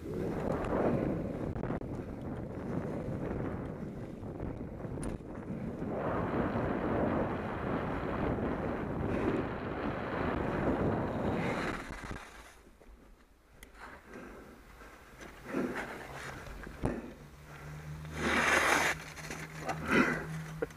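Mountain bike riding fast downhill: tyre noise and wind on a helmet-mounted camera's microphone as a steady rush, turning quieter after about twelve seconds, with a loud scrape near the end.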